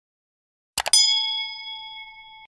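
Two quick clicks, then a bright bell ding that rings on and slowly fades: the notification-bell sound effect of a subscribe-button animation.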